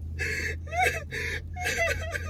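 A person gasping and whimpering in short, broken vocal sounds, over a steady low hum.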